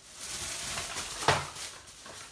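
Thin plastic shopping bag rustling as a hand rummages in it, with one sharp click a little over a second in.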